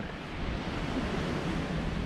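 Ocean surf washing steadily: an even rush of noise with no breaks.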